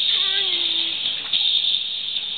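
A baby's short vocal squeal, lasting under a second and sliding slightly down in pitch, over steady background hiss.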